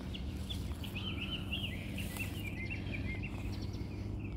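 A songbird singing a rapid, chattering run of short chirping notes, over a steady low rumble.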